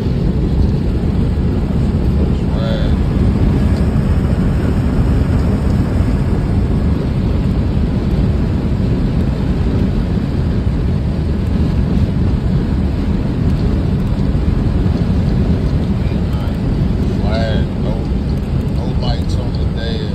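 Loud, steady low rumble of wind and road noise inside a box-body Chevrolet Caprice cruising at highway speed.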